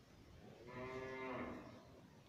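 A faint, steady, voice-like pitched sound lasting just under a second, starting about half a second in.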